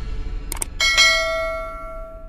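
Subscribe-button sound effect: two quick mouse clicks about half a second in, then a notification bell chime struck twice that rings on and slowly fades.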